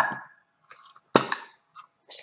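Two sharp clacks about a second apart, each with a short ringing tail, from a small tea tin being handled and opened.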